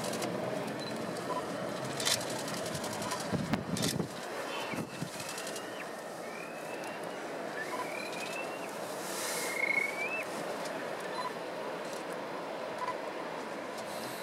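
Steady wind and surf noise on the beach. Two knocks and a low rumble come about two to four seconds in. From about four and a half to ten seconds in there are four or five faint, thin, high bird calls, each a short rising whistle.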